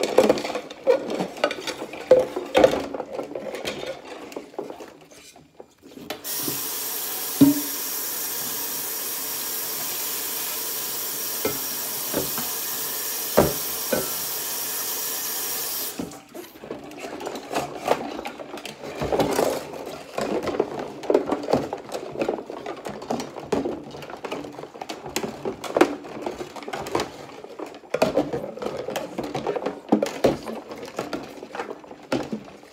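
Dishes washed by hand in a soapy stainless steel sink: rubber-gloved hands scrubbing ceramic plates, with irregular rubbing, small knocks and sloshing. About six seconds in, the faucet starts running steadily for about ten seconds, with a couple of knocks under it, then cuts off and the scrubbing and clinking resume.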